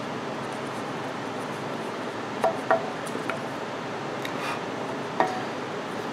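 A few short, sharp wooden knocks and clicks as cut pine pieces are pulled apart and set down against each other and the scroll saw's metal table, over a steady background hiss.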